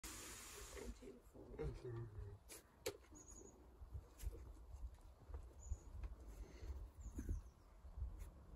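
Quiet scattered taps and scuffs of a climber's hands and rubber-soled shoes on sandstone as she moves across the overhang, with a faint vocal sound about two seconds in and low rumble underneath.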